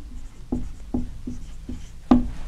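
Dry-erase marker writing on a whiteboard: a quick series of short strokes, about four in two seconds.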